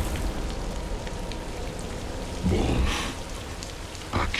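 Steady heavy rain, with a brief louder sound about two and a half seconds in.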